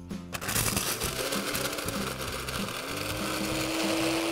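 Cuisinart compact 350-watt blender running on high, crushing ice cubes. It starts just under half a second in with a dense rattle of ice against the jar over the motor's whine, and a little under three seconds in the motor settles into a steadier, slightly higher whine.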